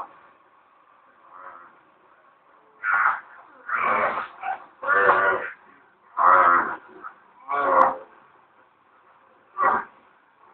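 A person's voice making a series of about six short, drawn-out wordless calls or groans, separated by brief pauses.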